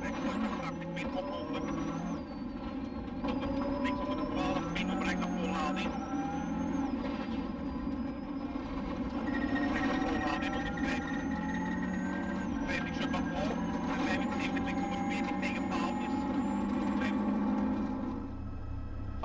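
Inside a Mitsubishi Carisma GT rally car at speed on gravel: the turbocharged four-cylinder engine climbs in revs and drops back at each gear change, several times over. Gravel clatters against the car in many sharp ticks, and the co-driver's voice calls pace notes over the noise.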